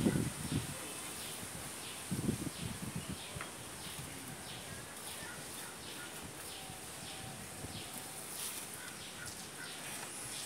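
Outdoor background with faint bird chirps repeating throughout, and a couple of short louder bursts of handling or voice near the start and about two seconds in.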